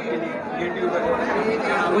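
Several people talking at once, their voices overlapping into a continuous chatter of a small crowd.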